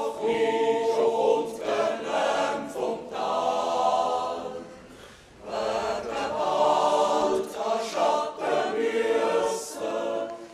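Background music of a choir singing sustained chords in phrases, dropping away briefly about five seconds in before the next phrase.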